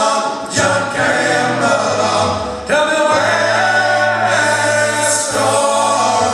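Four men singing a sea shanty a cappella in close harmony, live, in long held chords with a sustained low bass note through the middle.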